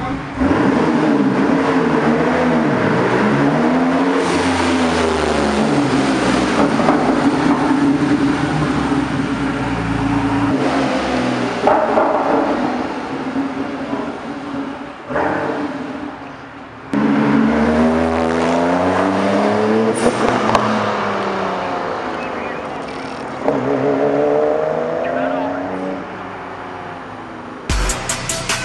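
The flat-six engine of a RUF Porsche 911 running and being revved as the car moves slowly through a concrete parking garage, its pitch rising and falling in repeated swells. The sound breaks off abruptly several times.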